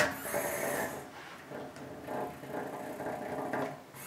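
Small geared electric motor of a Cubelets drive block whirring as the little modular robot rolls across a tabletop toward a wall, a faint high whine that is strongest in the first second.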